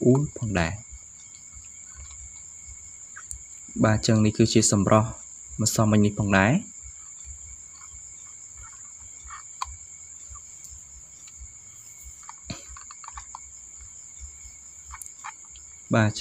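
A few short phrases of narration speech near the start and around the middle, over a steady high-pitched whine that runs unbroken beneath, with a fainter lower tone.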